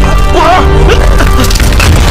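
Dramatic soundtrack music under sharp crashing, splintering impacts. About half a second in, a man cries out a name twice.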